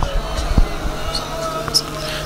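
A few dull knocks, one at the start and another about half a second in, over a steady low hum and faint voices, as heard through a stage microphone.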